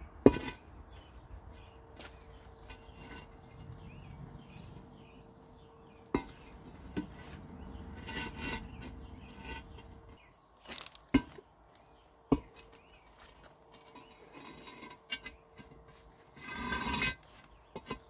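Concrete cinder blocks knocking and scraping against each other as they are shifted and set in place, with a sharp knock right at the start, a few more scattered knocks, and a rasping scrape of about a second near the end.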